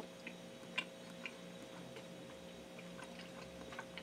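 A person chewing a mouthful of cheeseburger with the mouth closed: faint, irregular small clicks and smacks, one louder click a little under a second in. A steady faint hum runs underneath.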